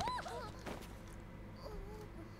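A faint, short, high-pitched squeaky cry with a wavering pitch in the first half-second, from the anime episode's audio, then only a low steady hum.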